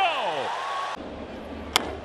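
The end of a broadcast announcer's call trailing off over ballpark crowd noise, then, after the background changes, a single sharp crack of a baseball bat hitting the ball near the end.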